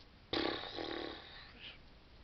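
A man's burst of breathy laughter, starting suddenly about a third of a second in and dying away within a second, with a short faint breath near the end.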